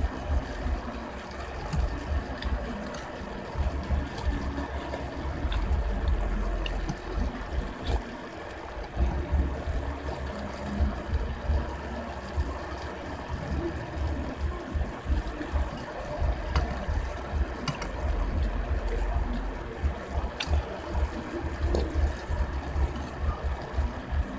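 Close-miked eating of ramen noodles: chewing and wet slurping sounds, with a few sharp clinks of a metal fork and spoon against the bowl.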